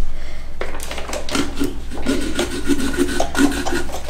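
Small serrated pumpkin-carving saw sawing through the wall of a pumpkin in a run of short back-and-forth strokes.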